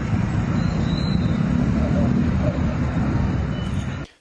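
Outdoor street ambience from amateur night footage: a steady low rumble with faint voices in it.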